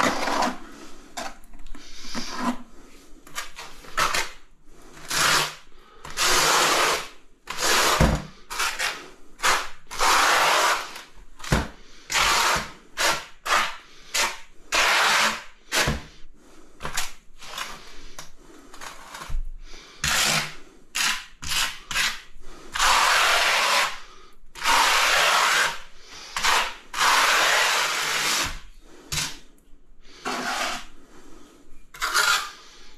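Steel trowel scraping and spreading a wet sand-and-cement mortar bed in repeated strokes, each from about half a second to two seconds long, with a few short dull knocks in between.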